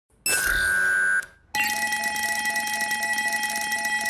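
Cartoon robot's electronic scanning and computing sound effect: a steady beep lasting about a second, a short gap, then a steady electronic tone with quick blips about four a second while it processes.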